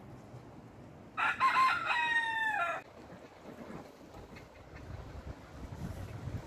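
Rooster crowing once, a single call of about a second and a half that drops in pitch at its end.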